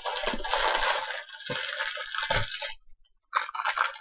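Small clear plastic jewellery bags crinkling as they are handled, a long rustle for the first two and a half seconds with a few low bumps, then a brief crackle near the end.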